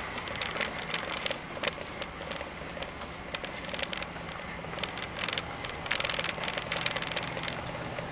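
Electric wheelchair driving along a hard corridor floor: a steady low motor hum with irregular light clicks and rattles from the chair, busiest in the second half.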